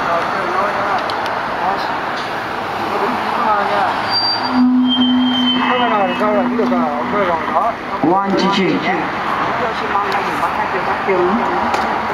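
Road traffic on a busy multi-lane street, a steady noise of passing cars, with voices over it. A steady low tone holds for about two seconds near the middle.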